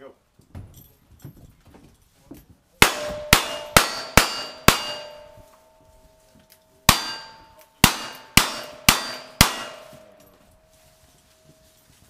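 Ten revolver shots at steel targets, each answered by a bright ringing clang from the struck plate. They come in two quick strings of five, a shot about every half second, with a pause of about two seconds between the strings.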